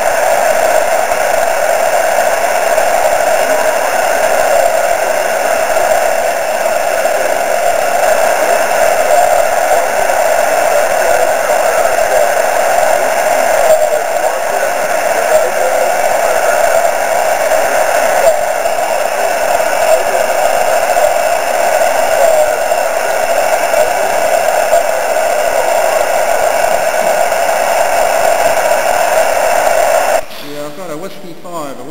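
Steady hiss of a radio receiver's noise while listening for moonbounce echoes, held in a narrow band like noise through a narrow filter.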